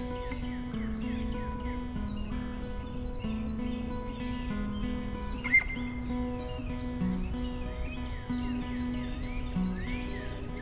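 Instrumental background music with held notes, and wild birds singing and chirping over it. One short chirp about five and a half seconds in is the loudest sound.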